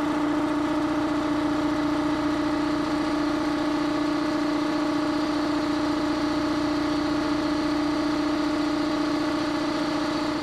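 Campbell Hausfeld belt-drive air compressor running steadily, its electric motor driving the pump through the belt with a strong, even hum. The pump pulley is wobbling on its shaft, and the owner cannot yet tell whether the shaft or the pulley is crooked.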